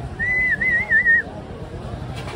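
A person whistling one high note with a wavering, warbling pitch for about a second, over background street noise.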